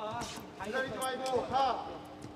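Mostly speech: a man exclaiming and voices calling out, with a few sharp knocks in between.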